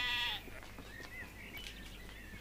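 A long, held livestock bleat that breaks off less than half a second in. After it comes faint outdoor quiet, with a couple of faint short chirps about a second in.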